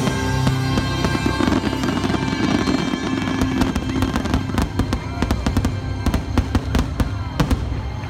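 Aerial firework shells bursting in a rapid barrage, the cracks coming thickest over the second half and stopping just before the end, over show music holding a sustained chord.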